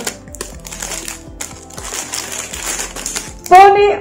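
Crinkling and rustling of a plastic snack packet being handled, a run of small crackles, with faint background music underneath; a woman starts speaking near the end.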